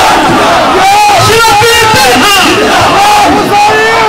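A large crowd of men shouting a slogan together, many raised voices overlapping without a break.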